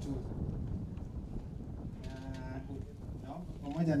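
A single held call, steady in pitch and about half a second long, two seconds in, over a low steady rumble.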